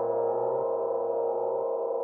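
A held synthesizer chord of many layered tones, steady, its low notes shifting twice.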